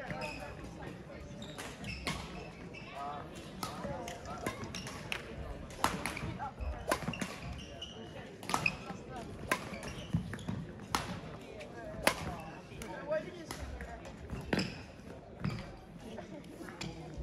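Badminton rackets striking shuttlecocks in rallies: a series of sharp smacks, roughly one every half second to a second, ringing in a large sports hall.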